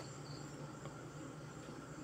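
Faint background noise with a low hum and a thin, steady high-pitched tone.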